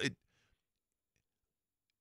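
A man's word trailing off right at the start, then near silence with a few faint clicks.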